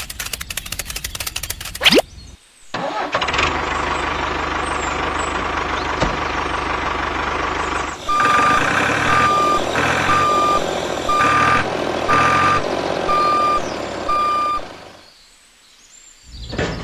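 Fast rattling clicks for about two seconds, then a tractor engine running steadily. About halfway through, a reversing alarm starts beeping, about seven evenly spaced beeps over the engine, as the tractor backs up to the tanker trailer. Both die away shortly before the end.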